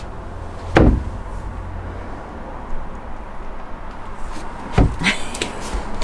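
Two dull wooden knocks, the loudest about a second in and another near the end, as a plywood panel and a pine-batten cabinet frame are handled and test-fitted, with a few light clicks and rustles after the second knock.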